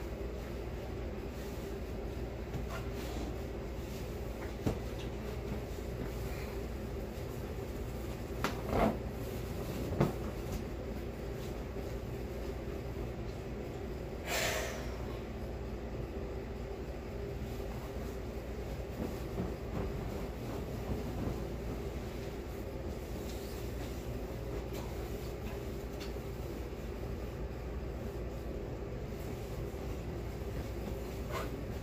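Electric fan running steadily, used as white noise, with a low hum under it. A few light knocks come in the first third, and about halfway through there is a brief swish of linen being handled.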